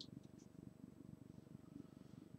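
Near silence: faint room tone with a low, steady hum and a couple of faint clicks near the start.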